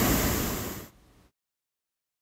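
Rushing water of a mountain waterfall and cascade through a rocky gorge, a steady rush of noise that fades out about a second in, after which the sound cuts to complete silence.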